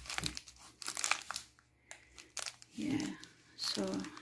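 Clear plastic bag crinkling in irregular crackles as it is handled around a sealed spray bottle, mostly in the first couple of seconds.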